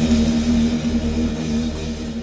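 Doom/psych rock band's last held chord ringing out, one steady droning pitch with its overtones, fading gradually as the song ends.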